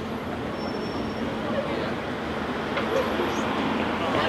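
Steady street traffic noise, with low, indistinct voices from a small group talking close by.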